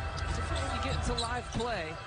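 Basketball being dribbled on a hardwood court, over a steady low hum of arena background.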